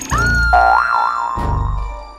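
A cartoon boing sound effect: a tone that rises, then wobbles down and settles. It plays over comedic backing music with a steady bass beat.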